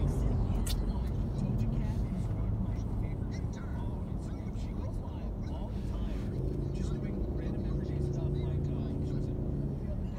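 Road noise inside a vehicle's cabin moving in freeway traffic: a steady low rumble of engine and tyres. About six and a half seconds in, a steady low hum joins it.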